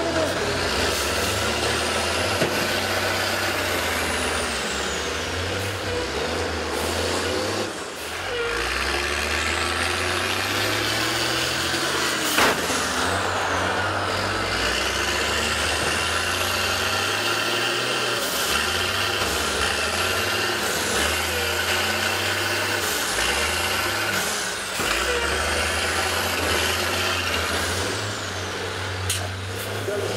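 Several school bus engines running and revving, their pitch rising and falling, as the buses drive in a demolition derby. There is a sharp bang about twelve seconds in.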